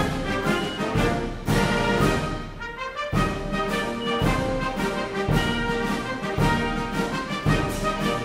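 Orchestral background music with brass.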